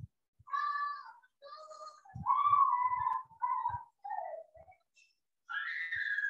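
A cat meowing, about six short meows in a row, some bending in pitch, heard through a video-call connection.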